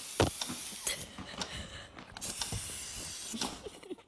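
Aerosol can of silly string spraying in two spurts: one running until about a second in, another from about two seconds in until shortly before the end, with a few short clicks between.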